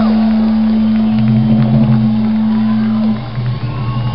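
Live rock band playing loudly through a festival PA: a long held low note that breaks off about three seconds in, with bass notes coming in about a second in, and a crowd shouting over it.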